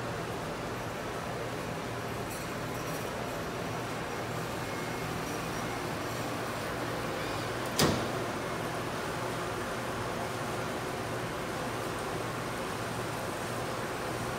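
Steady hum of shrink-wrap packaging machinery running, with one sharp clack about eight seconds in.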